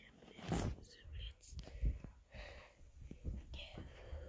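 Soft whispering and breathing close to a handheld phone's microphone, with low handling rumble and a few light clicks as the phone is carried and moved.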